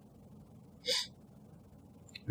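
A single short, sharp intake of breath about a second in, close to the microphone, over faint steady hiss.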